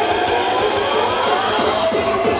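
Loud hardcore dance music played by a DJ, with a synth line sweeping upward in pitch through the middle of the passage.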